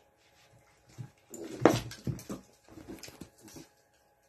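A small dog making a series of short sounds at play. They start about a second in, are loudest a little before the two-second mark, and thin out into a few shorter ones before stopping near the end.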